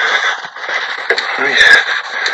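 Recorded outdoor video played back through a phone's small speaker: a steady hiss of background noise, with a man saying a brief word about one and a half seconds in.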